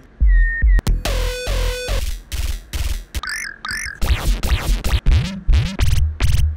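An Ableton Operator FM synth plays a fast run of short, bass-heavy synth notes from an arpeggiator. Each note has a different, randomly generated timbre, and a few slide in pitch.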